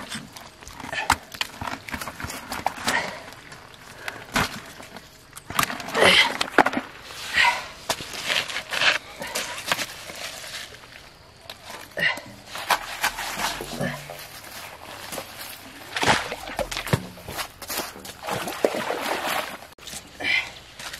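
Irregular knocks, scrapes and thuds of hands-on work: fish being handled and a small water pump and its plastic suction hose being taken apart and moved. The pump's engine is not running.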